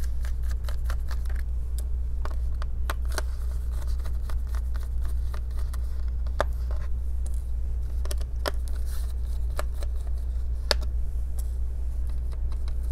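Scattered light clicks and taps of a Phillips screwdriver and small screws being worked out of a laptop's bottom cover, at irregular intervals over a steady low hum.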